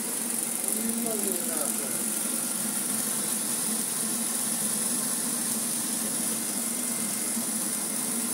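Vorwerk robot vacuum running as it drives across carpet: a steady motor hum with a high, even whine from its suction fan.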